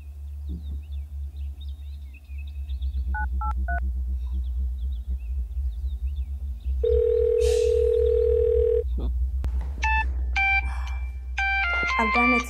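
Mobile phone call on loudspeaker: three short keypad beeps, then a single steady ringback tone lasting about two seconds, then a melodic phone ringtone starting near the end, all over a low background music bed.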